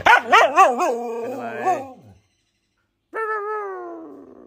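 A dog howling: a wavering call whose pitch rises and falls about four times over two seconds. After a short silence comes a second, longer call that slides downward and fades.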